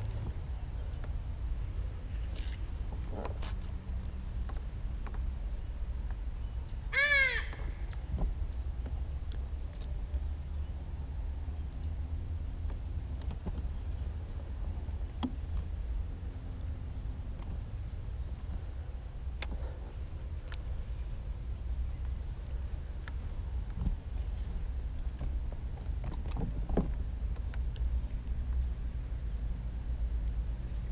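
A single short bird call about seven seconds in, over a steady low rumble, with a few faint ticks scattered through.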